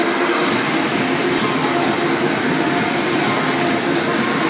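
Steady, loud hubbub of a busy indoor ice rink: skate blades running on the ice amid crowd noise, with a brief scraping hiss about every two seconds.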